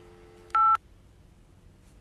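Telephone tones as a call is hung up: a faint steady dial tone, then one short, loud two-note keypad beep about half a second in.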